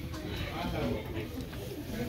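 Indistinct voices talking in the background, with no words clearly made out.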